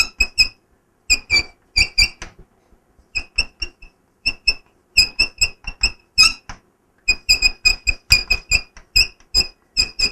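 Chalk writing on a blackboard: rapid short strokes, each with a squeak, in runs separated by brief pauses of under a second.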